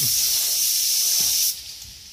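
Compressed-air gravity-feed spray gun hissing steadily as it sprays clear coat onto a painted engine part, then stopping abruptly about three-quarters of the way through.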